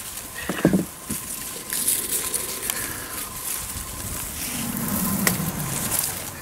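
Peach-tree leaves and twigs rustling as ripe peaches are pulled off by hand and handled over a plastic crate, with a few light knocks.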